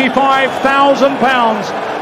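Speech only: a man announcing, talking without a break.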